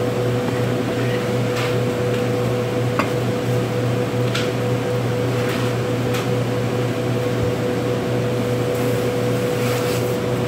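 Steady machine hum with a constant mid-pitched tone, like a ventilation fan or cooling unit running in the cutting room. A few faint, light taps sound over it as a knife cuts through a beef roll and the slices are handled on a cutting board.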